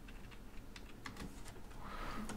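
Faint, irregular key clicks from a computer keyboard as a short word is typed.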